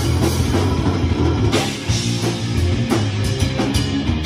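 A live rock band playing loud, heavy rock on electric guitars and a drum kit, with no vocals.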